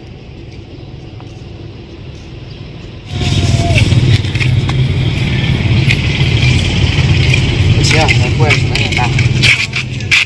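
Outdoor background noise: a steady low rumble that jumps much louder about three seconds in and stays loud, with a few short rising-and-falling chirps near the end.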